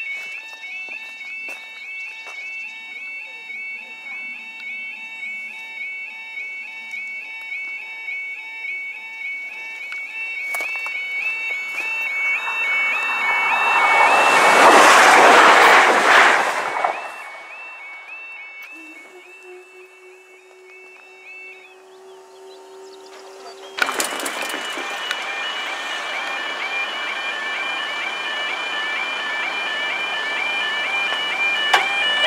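Level crossing warning alarm warbling on repeat while a passenger train passes: a loud rush swells a little after ten seconds in, peaks around fifteen seconds and fades. The alarm stops a few seconds later, a steady low hum follows, then another crossing's alarm starts suddenly and louder.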